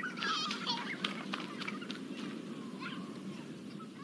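Sound from the closing moments of a music video playing back: a low, muffled hubbub with scattered high calls and whoops, thinning out and starting to fade near the end.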